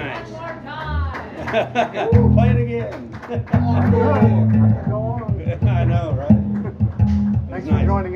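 Electric guitar playing a riff of low, held notes that comes in about two seconds in, with voices talking over it.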